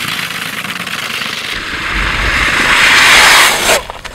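E-bike hub-motor wheel with a worn, spiked timing-belt tread spinning on ice, making a rapid, loud clattering rattle. It grows louder and stops abruptly just before the end as the sled spins out.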